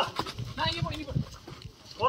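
Short bursts of voices with a brief laugh from people around the court.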